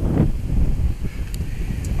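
Strong gusty wind buffeting the microphone: a rough, uneven low rumble that rises and falls with the gusts.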